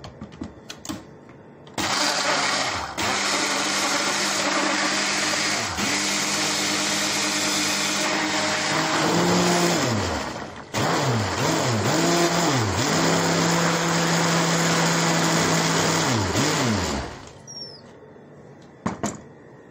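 Moulinex blender puréeing boiled carrots. The motor runs for about nine seconds, stops for a moment, then runs again for about six seconds before cutting off near the end, its pitch sagging and recovering several times in the second run.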